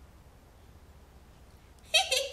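Near silence: room tone with a faint low hum. Right at the end a woman's voice suddenly starts a high-pitched giggle.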